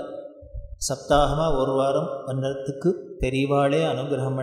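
A man's voice chanting a devotional verse in long, held, melodic phrases. The chant comes in about a second in, with a short break for breath near the end.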